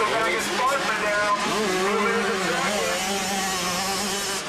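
Several motocross bikes' engines revving around the track, their pitch rising and falling as they accelerate and back off, with a steady low drone underneath.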